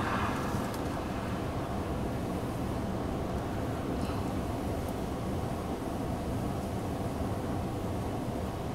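Steady low rumble of a car engine idling, with no other distinct events.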